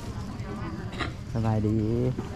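A person's voice saying the Lao greeting "sabaidee" near the end, over low steady outdoor background noise with one short click about a second in.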